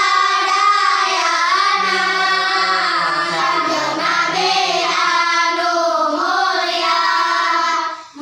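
A group of children singing a Sundanese nadzom (devotional verse praising the Prophet) together in unison, without instruments, in one continuous phrase that breaks briefly for breath at the end.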